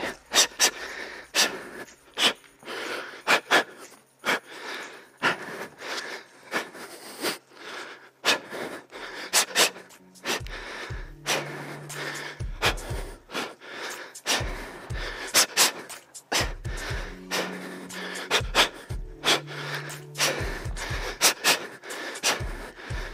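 A man's sharp, forceful breaths out, one blown with each punch, knee and kick of a shadow-kickboxing combination, coming in a quick, uneven run.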